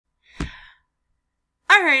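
A woman's short breath or sigh into the microphone about half a second in, with a brief low bump at its start; she starts speaking near the end.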